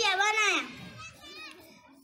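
A child's high voice, loud for about the first half second, then trailing off into faint background voices.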